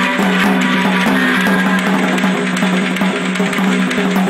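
Drum kit played with sticks in a fast, busy rock pattern, the strokes coming quickly one after another, over music with steady pitched notes.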